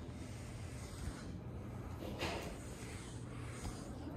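Steady low room hum with a brief rubbing rustle about two seconds in, from a hand handling the phone that is recording.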